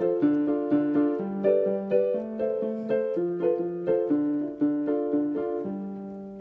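Yamaha portable keyboard on a piano voice, playing the same few chords in a steady repeated rhythm with both hands. The song's verse chords stay the same but are now played in a new, busier rhythm.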